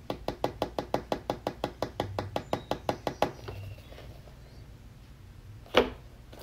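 A rapid, even run of light clicks or taps, about eight a second, lasting some three seconds, then a single louder knock near the end.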